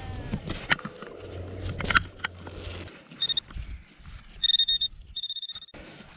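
A spade cutting and knocking into turf and soil, then a handheld pinpointer probe buzzing in three short high-pitched bursts as it closes on a buried lead musket ball.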